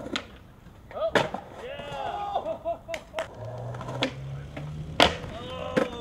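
Skateboard knocking and slapping on concrete in a series of sharp impacts, the loudest near the end as a rider bails, with brief vocal calls in between.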